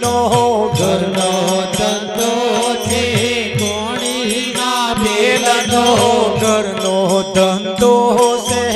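Devotional bhajan: a man's voice singing a drawn-out, wavering melodic line without clear words, over a harmonium's held notes, with percussion keeping a steady beat.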